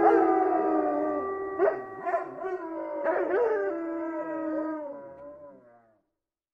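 Closing music's last held chord fading out, with a dog howling over it in a few short, wavering calls. The sound dies away to nothing near the end.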